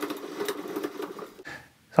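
A steady mechanical whirr that fades out about a second and a half in.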